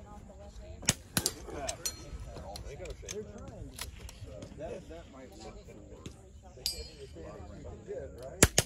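Rimfire rifle shots: sharp cracks, the loudest about a second in with two more close behind, and a few fainter ones scattered later, over low background voices.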